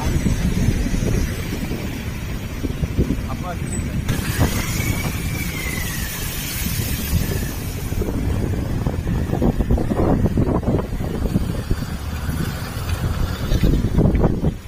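Rough low rumble of wind buffeting a phone microphone outdoors. In the second half it comes with the noise of a motorcycle being ridden. About four seconds in, a faint tone rises and falls in pitch.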